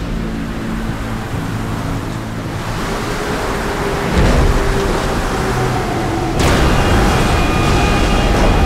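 Storm-at-sea sound effects: heavy waves and rushing spray over a deep rumble, with held music tones underneath. The sound steps up sharply about four seconds in and again just past six seconds.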